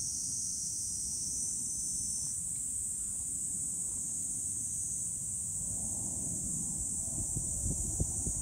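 Steady, high-pitched insect drone from the surrounding trees, over a low rumble of wind on the microphone.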